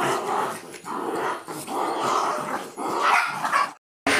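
Two dogs fighting, growling and yapping in a run of rough bursts that cuts off abruptly just before the end.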